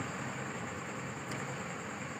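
Steady background hum and hiss with a faint high whine, no distinct events: the room's background noise in a pause between speech.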